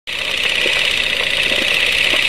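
Film projector running, a steady mechanical whirr and rattle.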